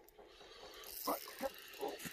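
Spinning reel being wound in on a fishing rod with a hooked bass on the line, a faint mechanical whirr and ticking, with faint voices.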